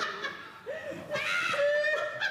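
Laughter: short chuckling voice sounds, with one longer held vocal sound near the end.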